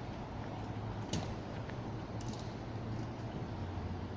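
Outdoor city background at night: a steady low hum over a wash of hiss, with one sharp click about a second in and a few faint ticks a little later.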